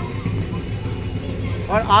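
A steady low hum with a rumbling background noise fills a pause in a man's speech; his voice comes back near the end.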